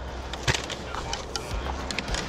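Scattered sharp snaps of airsoft gunfire, about half a dozen irregular single shots, the loudest about half a second in, over a low steady rumble.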